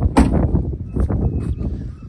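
Wind buffeting the phone's microphone in a steady rumble, with one sharp knock just after the start.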